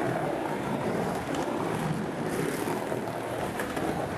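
Skateboard wheels rolling around a skate-park bowl: a steady rumble that carries on without a break.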